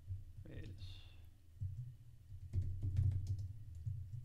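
Typing on a computer keyboard: a run of key clicks with low thuds, busiest from about two and a half to three and a half seconds in.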